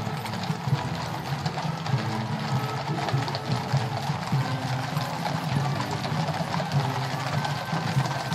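Hooves of many cavalry horses trotting on wet tarmac, a dense, continuous clatter of overlapping strikes. Military band music plays underneath.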